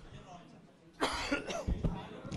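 A man coughing: a sudden loud cough about a second in, followed by a few shorter coughs.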